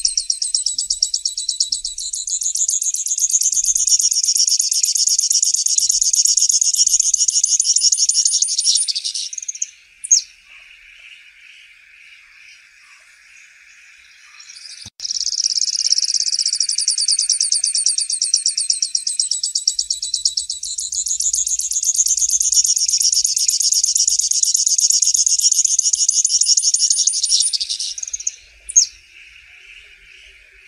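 Grassland yellow finch singing: two long songs of about ten seconds each, each a fast, high buzzy trill that ends with a short sharp note. A faint steady background hiss fills the pause between them, and the second song starts abruptly.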